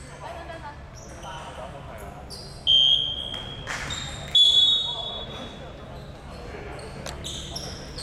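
Referee's whistle blown twice, two sharp blasts about a second and a half apart, the second one longer. Short high squeaks of basketball shoes on the hardwood court come and go around them.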